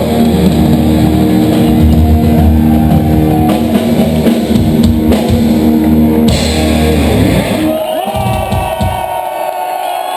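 Thrash metal band playing live at full volume, with distorted electric guitars, bass and drum kit hammering out the final bars of the song. The band stops about eight seconds in, leaving the crowd cheering.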